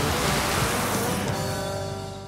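A side-by-side utility vehicle's tyres plough through a muddy puddle, throwing up a spray of water: a loud rushing splash that fades out about one and a half seconds in, with background music taking over near the end.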